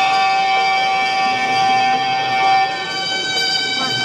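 A reed wind instrument plays music in long, steady held notes: one note lasts about two and a half seconds, then the pitch changes to other held notes.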